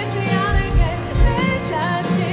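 A woman singing a pop song live with a band, her voice wavering with vibrato over keyboard and a drum kit whose kick drum beats steadily beneath.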